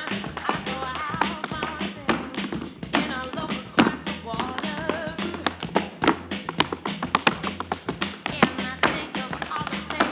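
Metal-plated tap shoes striking a stage floor in quick, irregular runs of sharp clicks, with the hardest strikes about four seconds in and again near eight and a half seconds, over recorded music.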